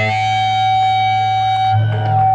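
Electric guitar chord left ringing through the amplifier at the end of a punk rock song, with a low bass note held under it; the drums and strumming have stopped and only the sustained notes remain.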